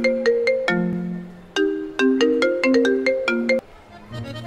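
Marimba-like phone ringtone melody: a short phrase of struck notes, played twice with a brief break between.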